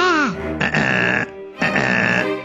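Comic cartoon-character vocal noises over children's background music: a short voiced sound falling in pitch, then two buzzy sounds about half a second each.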